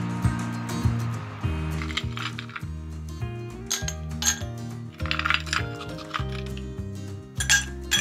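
Ice cubes dropped one at a time into a glass tumbler, clinking against the glass and against each other in several separate clinks starting about two seconds in, over soft background music.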